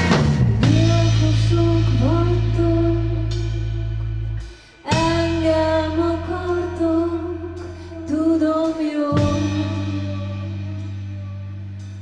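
Live band music: a woman's voice sings a slow, wavering melody over deep, held bass notes, with only sparse drums. The music drops out briefly about four and a half seconds in, then comes back.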